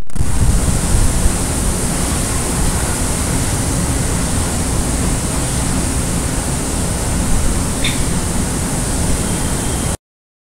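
A loud, steady rushing noise, like static or surf, with no tune or beat. It starts and stops abruptly, and a brief faint tone sounds about eight seconds in.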